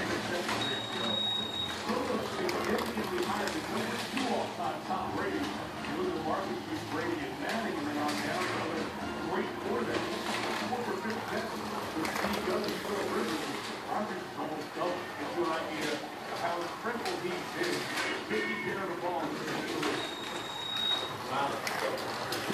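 Indistinct chatter of several people in a room while slot cars race on the track. Two short, high electronic beeps sound, one about a second in and one near the end.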